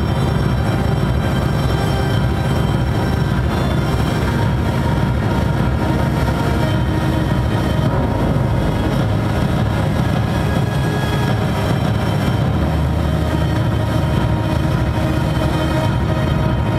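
Live dark industrial electronic music: a dense, steady, bass-heavy drone from synthesizers and electric guitar, with no vocals.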